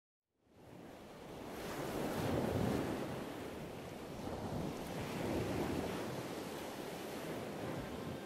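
Ocean surf: waves washing in, rising from silence and swelling twice, a few seconds apart.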